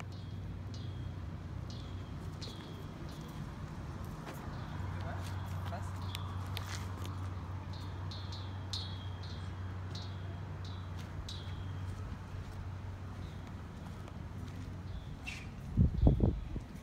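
A small bird chirping over and over, short falling chirps about once or twice a second, over a steady low hum.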